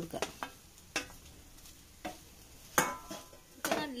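Utensils scraping and knocking in a non-stick frying pan as sliced banana is pushed from a steel bowl and stirred into grated coconut with a wooden spatula: a handful of separate scrapes and taps, the loudest about three seconds in with a brief metallic ring.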